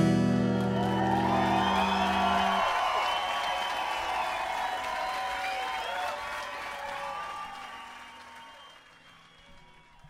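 The last strummed chord of an acoustic guitar rings out and dies away within the first two or three seconds, under a crowd applauding and cheering. The applause slowly fades to faint by the end.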